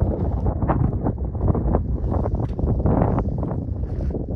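Strong wind buffeting the microphone: a loud, gusting rumble that drowns out everything else.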